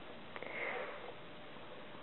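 A faint click, then a short breathy sniff about half a second in, over quiet room tone.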